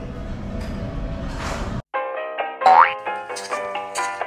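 Noisy room sound swelling into a rising whoosh that cuts off abruptly, then after a brief gap a bright, cheerful intro jingle of short plucked notes, with a quick upward-sliding tone near its start.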